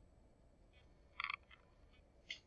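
Quiet room tone broken a little over a second in by one brief, high squeak, with a fainter one just after.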